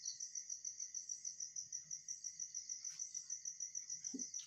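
A cricket chirping steadily in the background: a fast, even run of high pulses, about eight a second.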